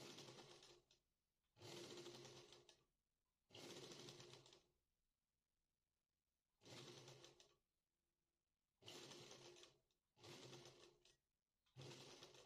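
Domestic sewing machine stitching fabric in short, faint runs of about a second each, stopping and starting again about seven times with brief pauses between, as the seam is sewn a little at a time.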